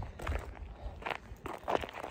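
Footsteps of a person walking outdoors, about five steps over two seconds, over a low rumble on the microphone.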